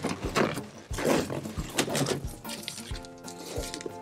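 Latex modelling balloons rubbing and squeaking against each other and the foil balloon as they are wrapped and tied. Background music with steady held notes comes in about halfway through.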